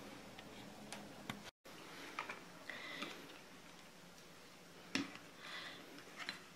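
Quiet kitchen room tone with a few light clicks and knocks as a plastic sieve bowl of grated potato is handled and set down on a glass plate. The sharpest knock comes about five seconds in.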